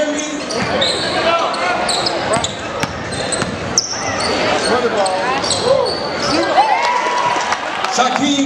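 Game sound in a school gym during a basketball game: a ball bouncing on the hardwood court, sneakers squeaking in short high chirps, and voices from players and crowd throughout.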